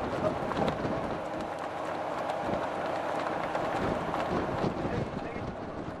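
Steady on-deck ambience of a working fishing boat: the vessel's machinery running, with wind on the microphone and faint crew voices.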